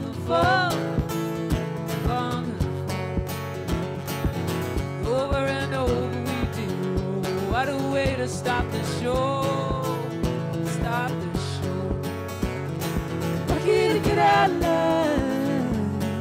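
Live acoustic guitar strummed in a steady rhythm under a woman's singing voice.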